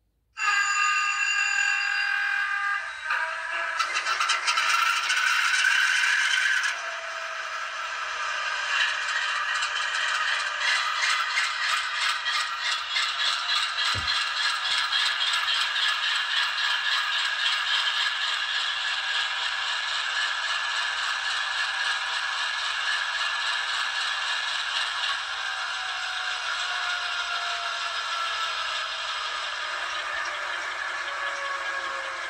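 ESU LokSound V5 Micro sound decoder playing GE diesel locomotive sounds through a tiny 9 x 16 mm sugar cube speaker in an N scale Dash 8-40BW: a horn chord sounds suddenly about half a second in, then a hiss, then the diesel engine runs with a steady, tinny rhythmic chug, with a slowly falling whine near the end.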